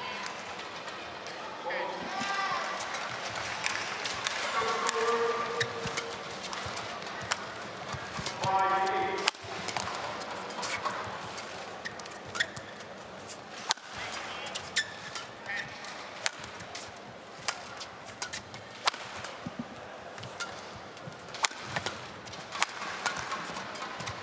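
Badminton rally: rackets strike the shuttlecock again and again in a long exchange, sharp clicks over arena crowd noise with a few voices rising from the crowd.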